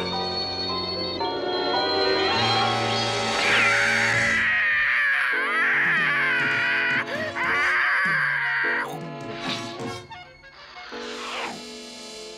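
Cartoon background music, with a cartoon cat's long, wavering yowl in the middle of it for about five seconds.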